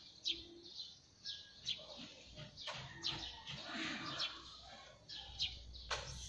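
Birds chirping: a dozen or so short, high, falling chirps scattered through, faint over a light background hiss.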